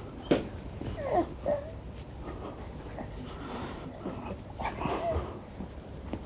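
A woman's short pained whimpers, gasps and breaths as painful points on her back are pressed: a sudden sound about a third of a second in, two brief wavering cries at about one second and a second and a half, and another near five seconds.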